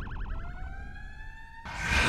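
Police siren in a fast yelp, about eight warbles a second, that switches to a rising wail and cuts off suddenly about one and a half seconds in. A loud rushing noise swells in just after, near the end.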